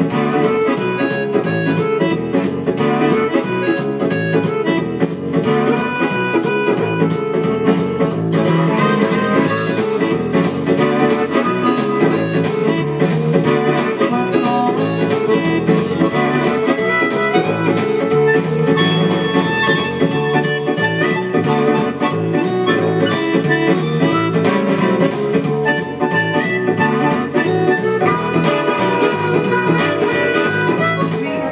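Harmonica held in cupped hands, played over a recorded guitar backing track, with steady continuous music throughout.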